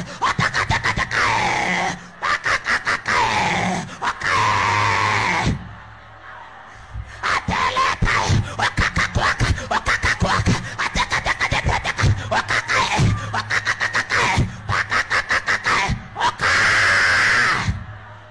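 A man's loud wailing cries that swoop up and down, with grunts, broken by long runs of rapid clicking strokes, and a quieter lull about six seconds in.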